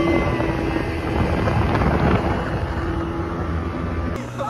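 Speedboat running at speed, a steady engine hum under heavy wind noise on the microphone.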